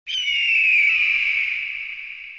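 An eagle's scream used as an intro sound effect: one long cry that starts suddenly, falls in pitch over its first second, then fades away slowly.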